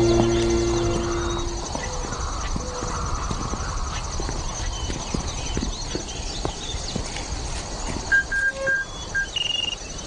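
A held low note of film score fading out in the first two seconds, then a quieter film soundtrack of scattered short clicks and knocks, with a few short high chirps near the end.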